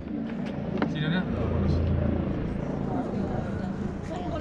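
A helicopter's rotor thudding steadily, swelling a little around the middle and easing off again.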